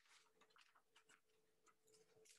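Near silence: room tone with a faint steady hum and scattered faint clicks.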